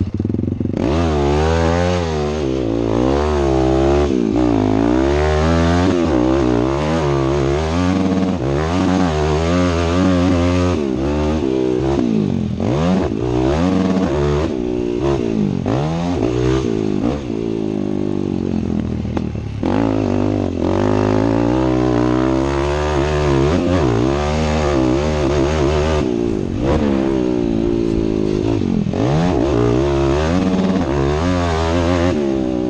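Yamaha motocross bike's engine heard close up from the rider, revving up and down over and over as the throttle is opened and closed and gears change, with brief drops in revs now and then.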